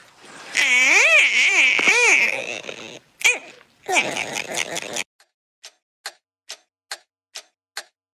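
Cockatiel screeching at being touched: loud calls that waver up and down in pitch for about five seconds. These are followed by a series of faint, short clicks, roughly two or three a second.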